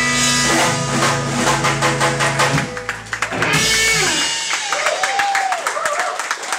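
A live electric blues-rock band with guitar, bass and drums plays its final chord, which rings out with drum and cymbal hits. The bass and sustained chord fall away about three and a half seconds in, and applause from a small audience breaks out near the end.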